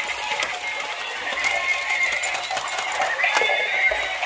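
Thin, continuous electronic music playing, of the kind a battery-operated toy vehicle plays.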